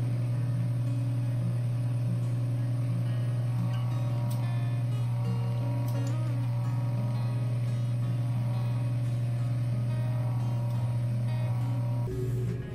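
A microdermabrasion machine's suction pump gives a low, steady hum while the vacuum wand is worked over the face. Soft acoustic guitar background music plays under it.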